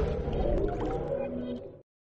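Tail of electronic ident music, with sustained low synth tones fading out and dropping to silence near the end.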